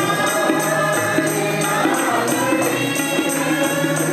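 Mixed group of voices singing a zaboor (psalm) hymn together, accompanied by a harmonium with a steady held low tone and a tambourine keeping a beat of about four strokes a second.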